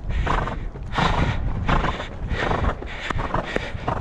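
Irish Sports Horse moving at speed on a sand gallop track: rhythmic hoofbeats on the sand and the horse's breath blowing out in time with its strides.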